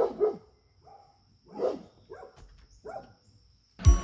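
A large dog barking about six times, in short separate barks spaced roughly half a second to a second apart, alerting at a deer. Music starts abruptly near the end.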